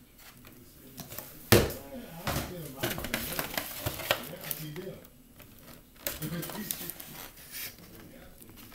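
Rigid plastic seed-starting tray and plastic container being handled: a sharp knock about a second and a half in, then scattered light clicks and rattles of plastic.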